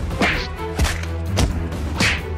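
Cartoon punch sound effects: about three swishing hits, one every half second or so, over a background music track with a steady bass.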